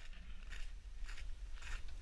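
Large sheet-metal gate being pushed open, with irregular crunching and scraping over a low steady rumble.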